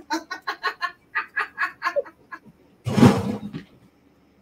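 A person laughing: two runs of quick, rhythmic ha-ha pulses, followed about three seconds in by a short, loud burst of noise.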